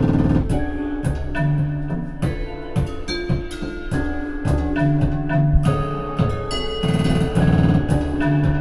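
Live band playing an instrumental passage: frequent sharp drum hits over held low notes and higher keyboard and electronic notes.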